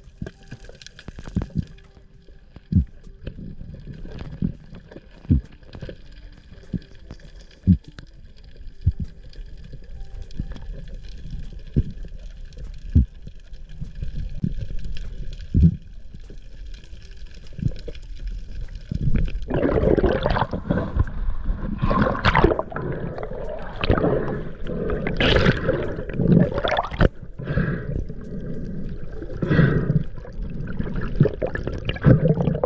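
Underwater sound picked up by a diving camera: irregular knocks and clicks over a low water rumble. From about twenty seconds in it turns to much louder bubbling and splashing water.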